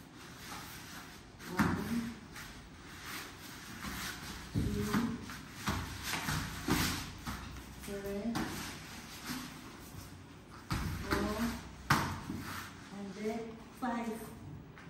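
Bodies thudding and scuffling on interlocking foam floor mats as two people wrestle, with sharp knocks near the start and about twelve seconds in. Short bits of voice come between them.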